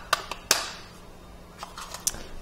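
Sharp plastic clicks and taps from a Raspberry Pi 4's red-and-white plastic case being handled and snapped together around the board: three clicks in the first half second, the loudest about half a second in, and a few lighter ones near the end.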